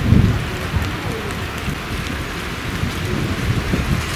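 Wind buffeting the microphone outdoors: a steady rushing hiss over an uneven low rumble, loudest in the first half-second.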